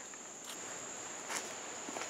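Steady high-pitched insect chirring, with two faint brief rustles about half a second and a second and a half in.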